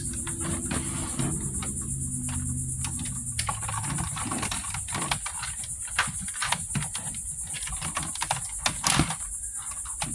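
Hinged plastic sections of a Galoob Micro Machines Death Star playset clicking and knocking as the opened sphere is unfolded by hand: many short, light, irregular clicks.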